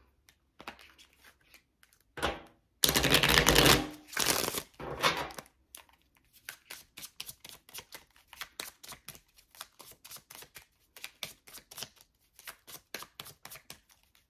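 A deck of oracle cards being shuffled by hand. There is a dense rush of shuffling about three seconds in, with shorter ones just after, then a long run of quick, light card slaps at about three or four a second.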